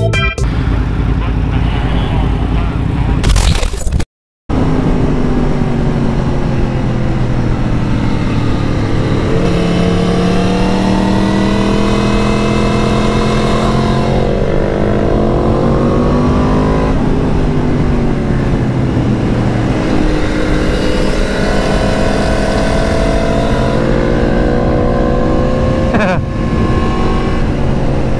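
Yamaha MT-10 crossplane inline-four engine pulling hard, its pitch rising and then dropping several times as it accelerates and changes gear, over a constant rush of wind on the microphone. The sound cuts out briefly about four seconds in.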